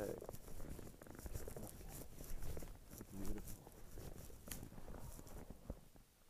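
Footsteps crunching and scuffing on snow-covered rock, in irregular steps, with a brief murmur of a voice about three seconds in.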